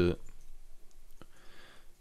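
A few faint keystrokes on a computer keyboard, separate short clicks, the clearest a little past the middle.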